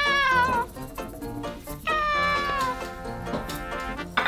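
An orange-and-white domestic cat meowing twice: two long calls, each falling in pitch, the second about two seconds in.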